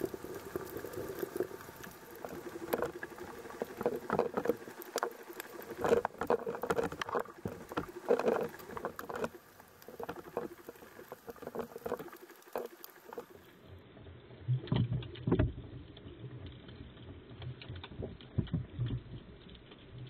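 Water noise picked up by an underwater camera while snorkeling: a watery rush with irregular crackles and clicks. About two-thirds of the way through, the sound turns duller and a low hum comes in.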